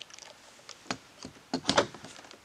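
Light clicks and rattles of a screw and driver being handled against a car's plastic door trim, with a quick cluster of clatter near the end.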